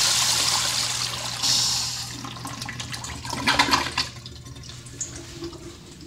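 1985 American Standard Afwall toilet finishing its flush: the rush of water into the bowl fades out over the first two seconds, with a brief surge partway through. A few sharp knocks follow about three and a half seconds in, over a steady low hum.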